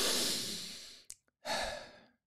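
A long breath blown out, strongest at once and fading away over about a second, then a tiny click and a second, shorter breath.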